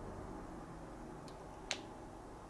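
Quiet room tone broken by two small clicks, a faint one just past halfway and a sharper one near the end, as a handheld gimbal is handled.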